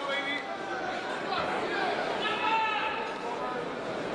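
Voices of the crowd in a large arena hall: overlapping chatter, with one raised voice calling out a couple of seconds in.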